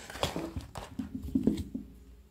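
Handling noise: a quick, irregular run of light knocks and bumps as a phone is moved about in its holder.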